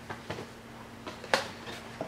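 Boxed chocolate eggs in cardboard and clear-plastic packaging being put down and picked up: a few light knocks and rustles, with one sharper tap about a second and a half in, over a faint steady hum.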